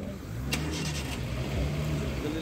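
Safari vehicle's engine running, its pitch rising and falling, with a sharp click about half a second in.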